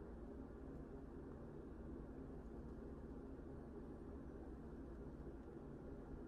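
Quiet room tone: a faint, steady low hum with a light hiss.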